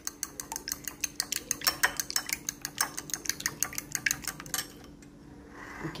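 Metal fork beating raw eggs in a bowl: a rapid run of clinks as the fork strikes the bowl, stopping about four and a half seconds in.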